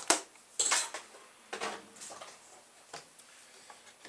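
Plastic spoon knocking and scraping against an aluminium pressure cooker pot while vegetable stew is stirred: a sharp knock at the start, a louder clatter about half a second in, then a few fainter clicks and scrapes.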